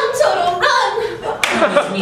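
Singers' voices at their microphones, with two sharp hand claps, one just after the start and one about one and a half seconds in.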